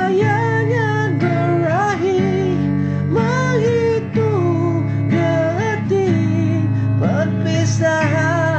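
Acoustic guitar strummed chords under a lead melody that slides and bends in pitch, in the song's instrumental solo section.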